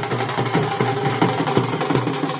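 Live wedding procession band music: fast, steady drumming with a held melodic line over it.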